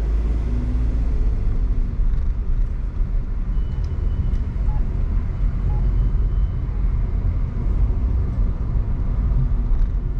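A car driving through city streets: a steady low rumble of engine and road noise. Two faint, brief high-pitched tones come in the middle.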